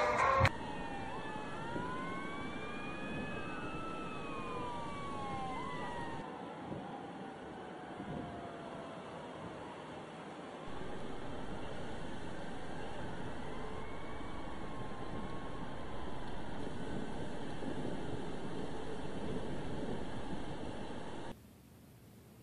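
Several distant wailing sounds, overlapping and rising and falling slowly in pitch, over a steady outdoor hiss; the background changes abruptly a few times.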